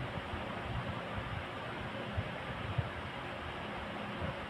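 Steady faint hiss of room tone, with a couple of soft low bumps about two and three seconds in.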